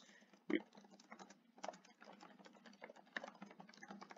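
Faint, irregular clicking of computer keyboard keys being typed, after a brief vocal sound about half a second in.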